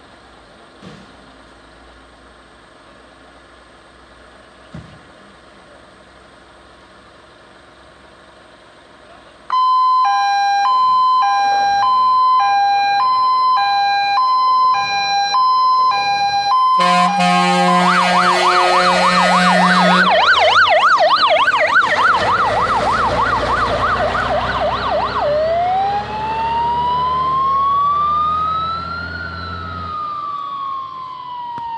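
Warning signals of a Jelcz 315 fire engine leaving on an emergency call. After a quiet start, a loud two-tone hi-lo signal begins about ten seconds in. About seventeen seconds in it gives way to a fast warbling yelp, and near the end to a long rising and falling wail over the truck's engine.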